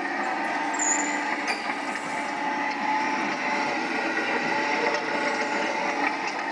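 Coin-operated construction-vehicle kiddie ride running: a steady drone with several held tones and no let-up.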